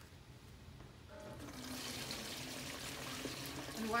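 Yellow antioxidant dipping solution (rosemary extract and citric acid in water) poured from one plastic bucket into another, starting about a second in and running as a steady splashing stream.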